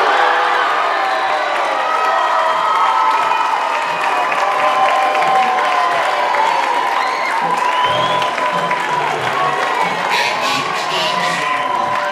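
Stadium crowd at a high school football game cheering and shouting, many voices at once, after a scoring play near the end zone.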